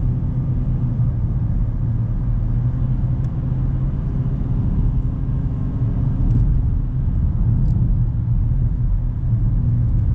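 Inside the cabin of a 1997 Toyota Mark II Grande 2.5 (JZX100) on the move: its 2.5-litre straight-six engine and tyres make a steady low drone and road rumble. A few faint ticks are heard along the way.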